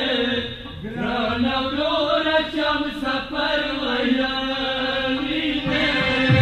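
A voice chanting a Pashto noha, a Shia lament, in long held, wavering notes, with a short break for breath just before the one-second mark.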